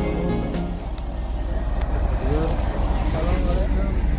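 Background music fades out within the first second, giving way to an engine running steadily with a low rumble, with people talking over it from about halfway through.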